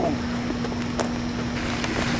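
Rumbling noise on a handheld camcorder's microphone, with a steady low hum and a few faint clicks. The hum stops just after the end.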